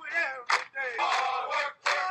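A group of voices yelling in short repeated shouts, the sequence repeating about every three seconds like a loop.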